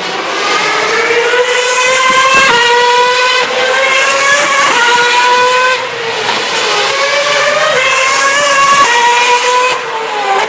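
2011 Formula 1 car's 2.4-litre V8 engine at high revs, accelerating hard: the pitch climbs and drops back at each upshift, about once a second, in two runs of gear changes with a brief dip in between.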